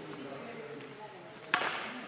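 A badminton racket strikes a shuttlecock once, sharply, about one and a half seconds in, with a reverberant tail from the hall. Faint voices murmur underneath.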